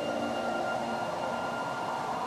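Steady rush of cascading fountain water, with a few soft, held notes of background music underneath.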